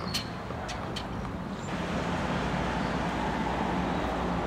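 Outdoor traffic ambience: a steady rumble of road traffic, with a few light clicks in the first second.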